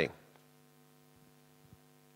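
Faint, steady electrical mains hum, with a couple of faint ticks.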